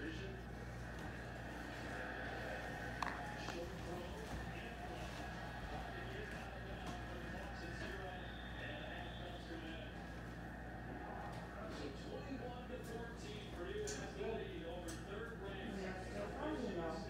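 Faint, indistinct voices in the background of a room, with no words clear.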